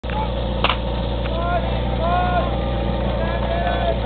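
Steady engine drone under raised, shouting voices, with one sharp clack just under a second in.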